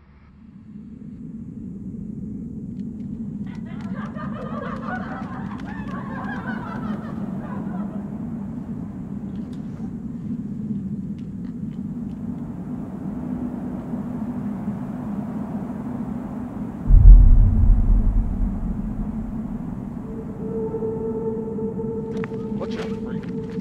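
Dark film sound design: a steady low drone swells in, with a wavering eerie sound about four seconds in. A loud, deep boom comes about seventeen seconds in and dies away, and a steady high tone enters near the end.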